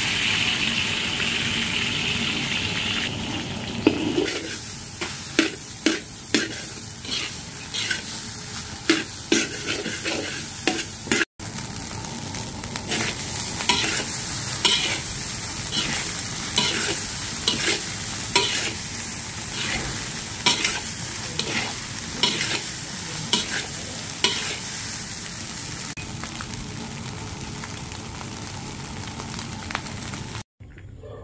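Eggs hitting hot oil in a wok with a loud sizzle. From about four seconds in, a metal spatula scrapes and knocks against the wok as fried rice is stir-fried, about two strokes a second over continued sizzling. The strokes thin out near the end, leaving a steadier, quieter sizzle.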